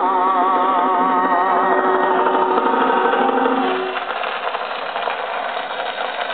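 A 78 rpm record playing on a gramophone: the song's last long note, held with a wavering vibrato, ends about four seconds in. It is followed by the steady hiss and crackle of the record's surface noise.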